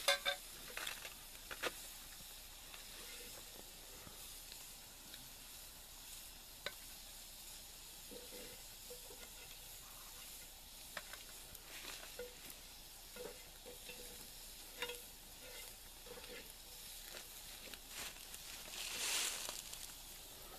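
Food sizzling faintly on a grate over a campfire, a steady hiss with occasional sharp clicks of metal tongs. A brief louder scraping hiss about a second before the end.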